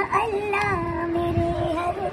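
A child's high voice singing one long held note.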